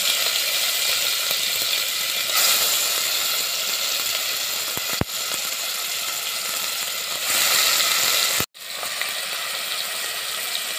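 Marinated hilsa fish pieces sizzling and frying in hot mustard oil in a steel pot as they are laid in one at a time. The sizzle swells about two and a half seconds in and again near seven and a half seconds as more pieces go in, then cuts out briefly a little after eight seconds.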